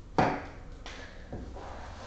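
A sharp knock about a fifth of a second in, then a softer click and a faint tap: the sounds of objects being handled, over a low steady room hum.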